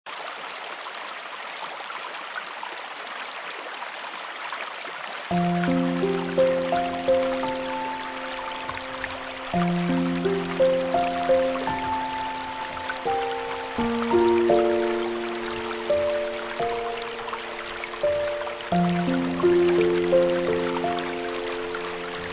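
A steady rush of flowing water, joined about five seconds in by slow, calm meditation music. The music is a melody of soft, decaying notes over held low tones that change about every four seconds.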